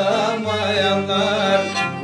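Black Sea kemençe bowed with classical guitar accompaniment and a male voice carrying a Turkish folk melody, over steady low guitar notes that step down about half a second in.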